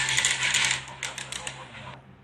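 A quick, irregular run of small clicks and rattles, dense at first and thinning out and fading over the second half.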